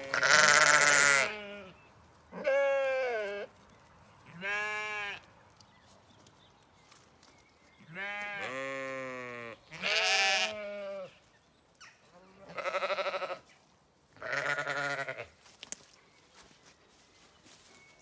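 Zwartbles sheep bleating at the gate: about seven separate bleats, each about a second long, at different pitches from several sheep, some with a wavering voice, with short pauses between.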